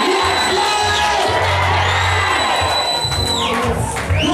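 Church worship music with a congregation cheering and shouting over it. Two long high whistle-like tones rise, hold for a second or two and fall away, one early and one ending shortly before the close.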